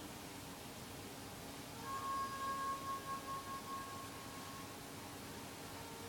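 A single pitched ringing tone with one overtone comes in about two seconds in and fades out over about three seconds, its level wavering as it dies away, over steady room hiss.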